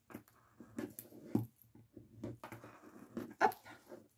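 A dog whimpering in a string of short, uneven sounds.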